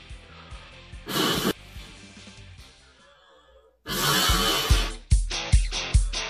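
A quick breath in about a second in, then a hard blow of air into the mouth of a plastic bottle just before four seconds, over background music that then takes up a regular drum beat.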